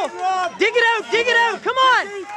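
Men's voices shouting short, repeated calls of encouragement, several a second, with crowd noise behind.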